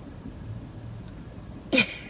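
Low steady hum inside a car's cabin, then near the end a short loud burst of a woman's laughter.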